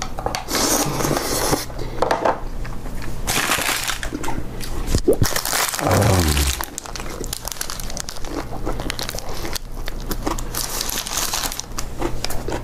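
Close-up eating sounds: ramen broth slurped from a bowl, the gimbap roll's wrapper crinkling as it is handled, then chewing.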